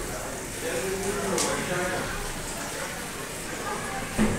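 Indistinct voices of people talking in a large hall, no words made out, with a brief high-pitched tick about a second and a half in.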